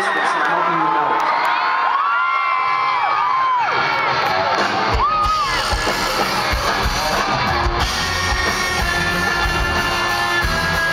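Arena crowd cheering, with high whoops and screams. About five seconds in, a rock band starts playing with electric guitar and drums.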